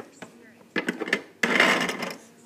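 Handling noise as toy figures and a metal tin are moved by hand: a few light knocks, then about half a second of loud rubbing and scraping near the end.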